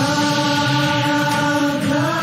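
Singers holding one long sung note on the word "Bagani!", moving to a new, higher note at the very end.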